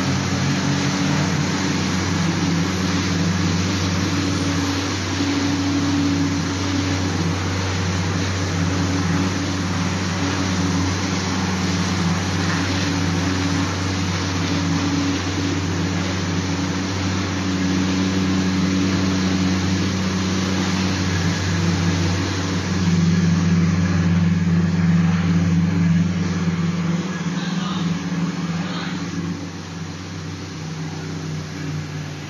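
HRB-1200 single facer corrugated cardboard rewinder line running: a steady, loud machine hum with several low drone tones under a noisy whirr. About three-quarters of the way through, the hum shifts higher and gets a little louder, and the deepest drone fades near the end.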